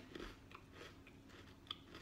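Faint chewing of a thin Oreo cookie, with a few small crunching clicks.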